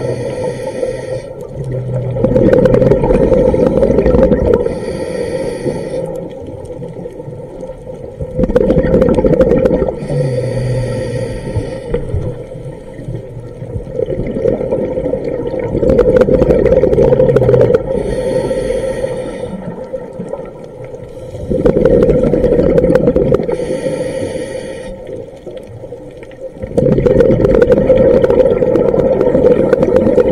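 A scuba diver breathing through a regulator underwater, heard through the camera housing: a long rush of exhaled bubbles, then a short hiss of inhalation, repeating about every six seconds.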